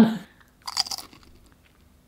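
A crunchy bite and chewing sound in one short burst about half a second in, followed by a few faint ticks.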